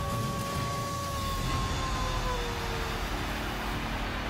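Sound-effect bed of a TV sports broadcast's animated logo open: a steady low rumble and whoosh with a held tone that slides down in pitch about two seconds in.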